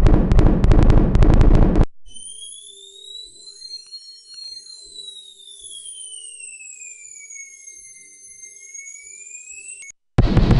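Radio Active Atomic Effects Synth software synthesizer playing its AK47 effect preset: a loud, rapid machine-gun-like rattle that stops about two seconds in. Then its Gravity Gun preset follows, much quieter: high whistling sci-fi tones gliding slowly up and down over a faint low hum.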